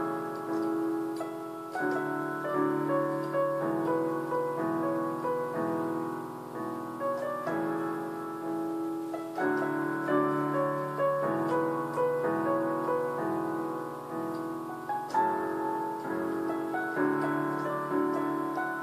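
Electronic arranger keyboard on a piano voice, played with both hands: a melody over held chords that change about once a second.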